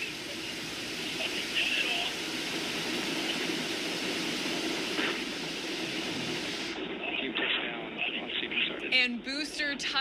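Blue Origin New Shepard booster's BE-3 liquid-hydrogen engine firing at low thrust as the booster hovers and sets down on the pad: a steady, noisy rush of sound. It stops at touchdown, about seven seconds in, and voices follow.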